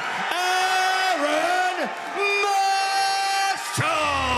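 A ring announcer bellowing the winner's name into a microphone as two long, drawn-out calls at a held pitch, with a crowd cheering underneath.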